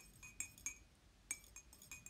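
A series of about half a dozen light clinks of small hard objects knocking together, each with a brief ring, irregularly spaced.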